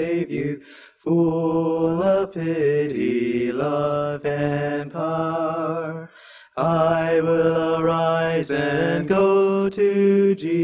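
Two male voices singing a hymn together in long, held phrases, with short breaks for breath about a second in and again about six seconds in.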